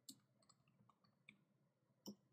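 A handful of faint, irregularly spaced computer keyboard keystroke clicks as a password is typed.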